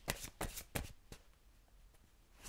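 Tarot cards being handled: a quick run of light card flicks and taps over about the first second.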